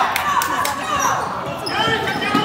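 A basketball bouncing on a hardwood gym floor, with a few sharp strikes in the first second, over voices calling out in the gym.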